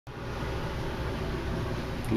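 Steady hiss of water draining from the aquaponics grow bed into the fish tank, over a low hum.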